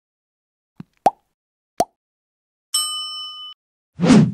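Animated end-screen sound effects: two short click-pops as the like and subscribe buttons are pressed, then a bright bell ding for the notification bell, ringing for under a second.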